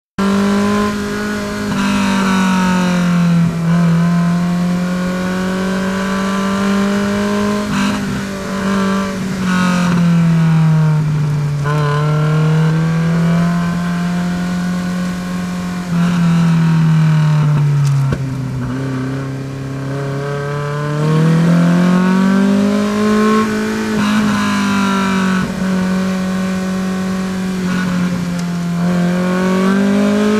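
Engine of a Honda-powered Ariel Atom race car, heard from its open cockpit under hard driving, its pitch rising and falling repeatedly as the revs climb and drop through the corners.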